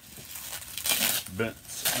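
Plastic packaging crinkling as it is handled, in two short rustles, one about a second in and one near the end.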